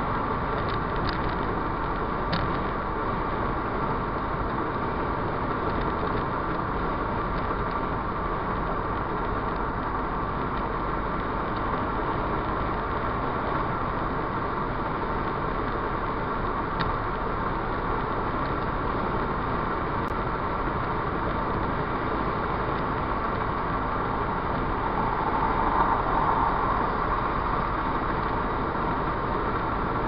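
Steady road, tyre and engine noise inside a Ford Fiesta Mk6 cruising at motorway speed, swelling slightly about 25 seconds in.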